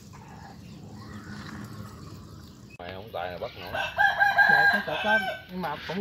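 A rooster crows once, loudly, starting about three seconds in, with a long held call in the middle.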